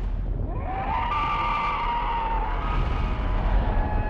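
Film sound mix of a giant monster fight: a long screeching creature cry that rises in pitch and then holds, over a deep rumble of fire and destruction.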